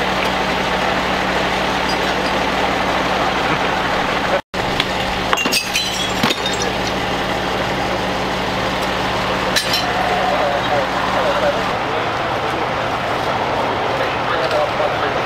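Steady hum of an idling engine under background voices. A few sharp clinks of metal or glass come in the middle, and the hum stops near the end.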